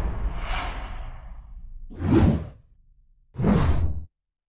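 Whoosh sound effects from an animated channel logo sting. A fading rush of noise is followed by two short whooshes about a second and a half apart.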